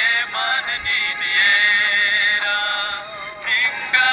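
Kurukh-language Christian devotional song: a wavering sung melody over instrumental backing, with a short lull about three seconds in.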